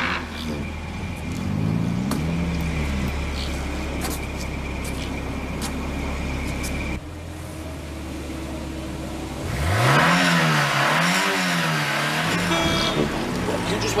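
Car engine running with a low steady hum and revved up and down a couple of times, then about ten seconds in it is sharply revved, rising and falling repeatedly over a loud rush of noise as the car accelerates away.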